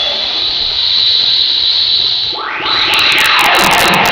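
Ultraman Ace transformation sound effect. A loud hissing whoosh with a high steady ringing tone gives way, a little past halfway, to a sweeping whoosh whose pitches spread up and down, with sharp crackling clicks in the last second or so.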